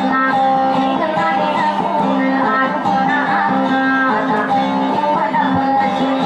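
Plucked guitar music playing a melodic instrumental passage in Tausug dayunday style, with sustained notes over a steady lower drone.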